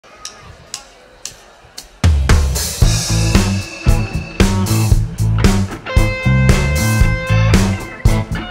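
A live blues-soul band's count-in of four clicks about half a second apart, then the full band comes in together about two seconds in with drums, bass and guitar.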